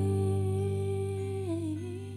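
Female voice holding one long vocal note over a sustained electric keyboard chord. The note dips briefly in pitch near the end, and the sound slowly fades.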